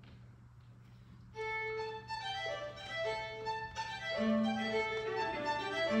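String quartet of two violins, viola and cello starting to play a traditional tune about a second and a half in, after a quiet room with a low steady hum. The parts enter in turn, with a lower part joining at about four seconds.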